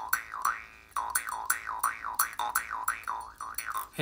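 Jaw harp plucked with a finger about three times a second, each twang swept up and down in a wah-wah by the player's mouth, with a short break a little after half a second in.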